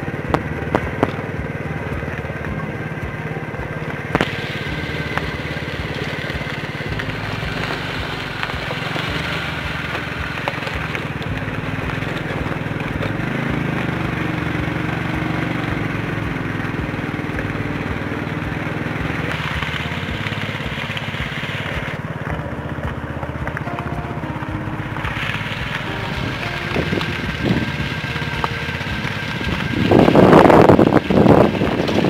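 Motorcycle engine running at a steady pace while riding over a rough gravel dirt track, with a few small knocks from the bumpy ground.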